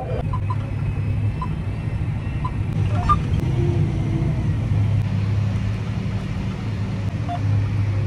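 John Deere 8235R tractor's diesel engine running at a steady drone, heard from inside the closed cab as a continuous low hum.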